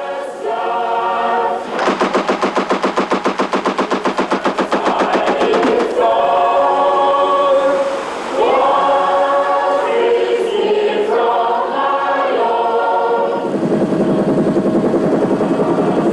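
Voices singing together in long, held notes. About two seconds in, a fast, even rattle of about ten beats a second runs under the singing for some four seconds.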